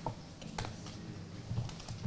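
A few scattered light clicks and taps over faint room noise, in a pause between speakers.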